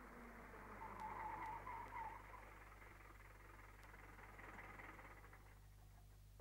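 Near silence: faint hiss and steady low hum of an old film soundtrack, with a faint wavering sound about a second in.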